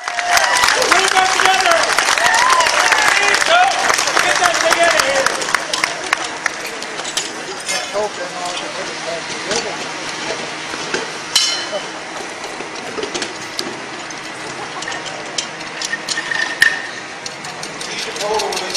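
Crowd voices and a dense patter of clicks for the first few seconds, then quieter scattered metal clinks and knocks from Jeep parts and tools being handled. A brighter ringing clink comes about eleven seconds in, and another near the end.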